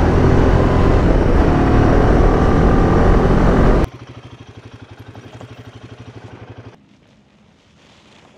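Royal Enfield Himalayan 450's single-cylinder engine pulling along the road with wind rush for about four seconds. It then drops suddenly to the same engine idling with an even pulse, which stops nearly seven seconds in.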